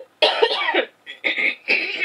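A woman coughing three times in quick succession, the first cough the longest.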